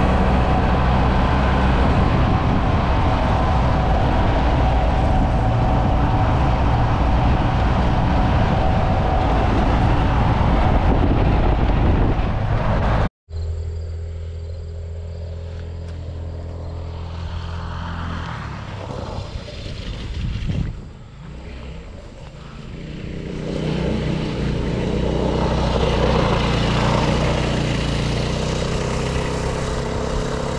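Small gasoline engine of a go-kart running steadily, then after an abrupt cut about halfway through, a quieter engine sound that fades and swells back up as a kart approaches and passes on a gravel lane.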